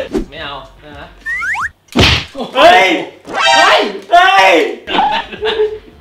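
Men's voices exclaiming loudly at a desk. About a second in there are two short rising whistle-like glides, then a sharp thump at about two seconds.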